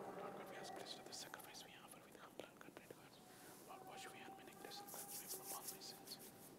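A man's faint whispered prayer, barely above the room tone, with soft hissing consonants growing a little stronger near the end.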